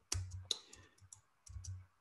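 A quick run of faint clicks at a computer, about six in two seconds, with two short low thumps, one near the start and one near the end. These are the clicks of a presenter advancing to the next slide.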